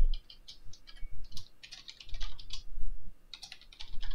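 Typing on a computer keyboard: quick runs of keystroke clicks in irregular bursts with short pauses between.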